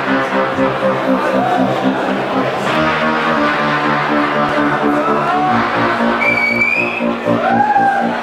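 Live hip-hop performance: sustained bass notes that change pitch about three seconds in and again past the middle, with squealing, rising and swooping glides laid over them every second or two.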